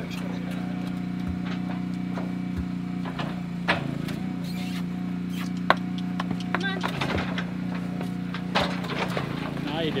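Steady motor hum from the hydraulic power unit of a cattle squeeze chute, with a few sharp metallic clicks and knocks.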